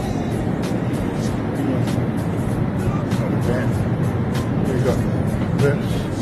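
Steady airliner cabin noise in flight, a dense even rush from the engines and airflow, with faint voices and background music over it.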